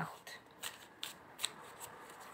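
A deck of tarot cards being shuffled by hand: a handful of soft, irregular taps as the cards slide and strike against each other.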